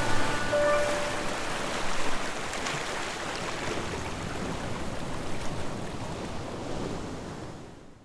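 Steady wash of ocean surf, with the last held notes of a music track dying away in the first second; the surf fades out gradually toward the end.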